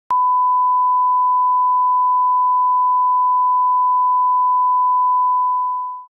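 Bars-and-tone line-up test tone: a single steady 1 kHz pure tone that comes in with a brief click just after the start and fades away at the very end.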